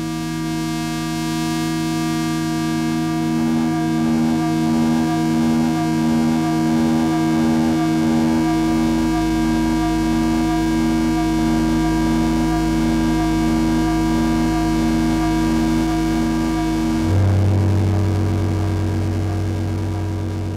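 Synket analogue synthesizer from 1964 sounding a sustained drone of several steady pitches while its knobs are turned, with one tone pulsing about once a second. About seventeen seconds in, the sound changes suddenly to a lower, heavier drone.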